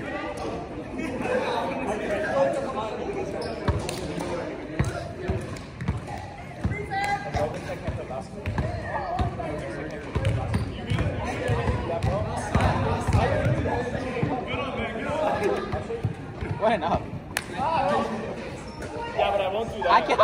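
Players' indistinct chatter echoing in a gymnasium, with a volleyball thudding on the hardwood floor several times in quick succession about halfway through.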